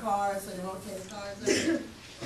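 Indistinct talking in a meeting room, with a short throaty burst like a cough or throat-clear about one and a half seconds in.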